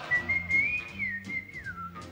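A person whistling a short melodic phrase that rises a little, dips, then slides down at the end, over a soft musical accompaniment.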